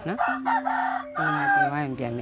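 A rooster crowing once, a call of about two seconds in two parts, ending in a drawn-out, wavering note that falls away.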